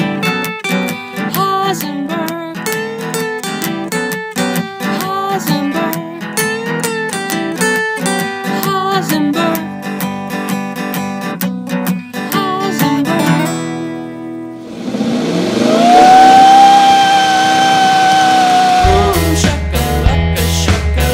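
Steel-string acoustic guitar strummed in a song's closing chords for about 13 seconds. After a short lull, a loud tone slides up and holds for about three seconds, and a rock track with heavy bass starts near the end.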